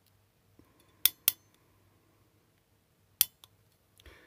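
Hand ratchet crimping tool clicking as a metal terminal is crimped onto a wire: two sharp clicks close together about a second in, then another click about three seconds in.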